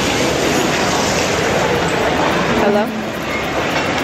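Loud, steady din of a busy buffet dining room, with indistinct voices mixed into the noise.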